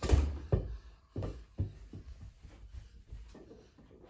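A rubber play ball hitting a closet door and bouncing on carpet: one loud hit right at the start, then a run of softer thuds about every half second that die away.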